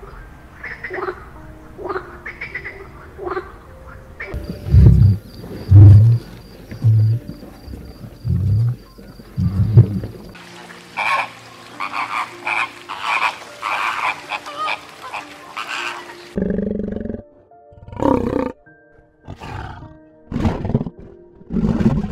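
A run of different animal calls. First come short bird chirps. Then five deep, loud low calls about a second apart, followed by the dense chatter of a bird flock. Near the end there are a few loud, harsh calls.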